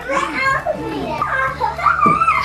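Young children's voices, excited high-pitched calls and chatter as they play.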